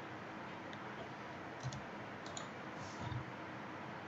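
Computer mouse clicking three or four times over a faint steady hiss of room and microphone noise.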